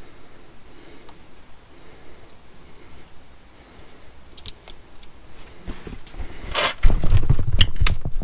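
Faint rustling and light clicks of small parts being handled: a rubber boot being worked onto a brake caliper slider pin, with a plastic parts packet. Near the end, louder knocks and a low rumbling handling noise.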